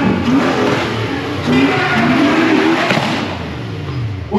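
V8 engine of a V8-swapped Toyota Altezza revving hard in repeated surges, its pitch rising and falling several times as the car drifts, with the rear tyres spinning and smoking.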